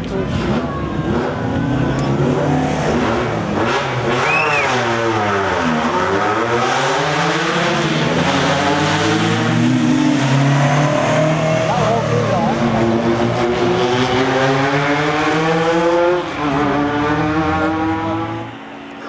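Toyota Corolla Levin TE27 rally car's engine revving hard on a stage, the revs falling about five seconds in, then climbing again and again with short drops at each gear change.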